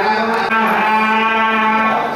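A loud, steady drone holding one low pitch with a rich, buzzing set of overtones, breaking off briefly at the start and again about half a second in.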